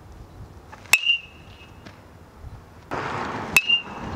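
Aluminum baseball bat hitting pitched balls twice, about two and a half seconds apart; each hit is a sharp metallic ping with a short ringing tail. A rushing noise swells up about half a second before the second hit.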